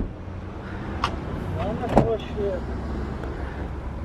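Steady low outdoor rumble, like distant traffic, under faint voices, with two light clicks about one and two seconds in.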